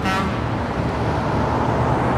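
City street traffic: a steady noise of cars passing at a busy intersection.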